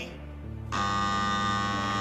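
Electric doorbell buzzer sounding one long steady buzz, starting a little under a second in and lasting over a second.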